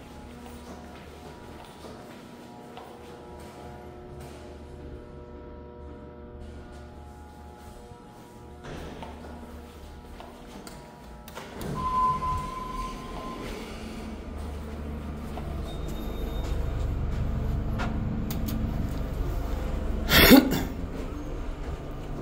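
Faint music with steady tones at first, then a short beep about halfway through. After that comes the low rumble of an elevator, growing louder, with one sharp clunk near the end.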